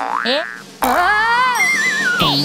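Cartoon comedy sound effects over music: a quick springy boing, then a long pitched tone that glides up, wavers and slides back down near the end.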